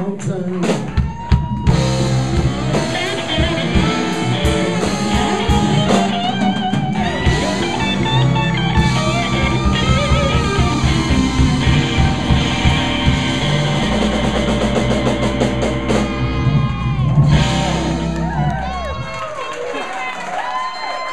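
A funk band playing live: electric guitar and saxophone over a drum beat. The band stops about a second before the end.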